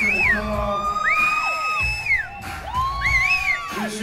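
Live hip hop backing music: a deep bass beat under a high, whine-like lead that slides up into held notes and falls away again, several times over.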